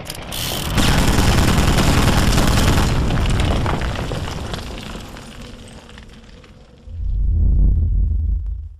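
Cinematic logo-intro sound effect: a loud boom about a second in, trailing off into a noisy tail that fades over several seconds, then a deep low rumble swelling up near the end.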